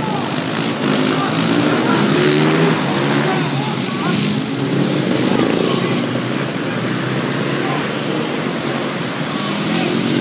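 Supermoto motorcycle engines running close by, with people's voices over them.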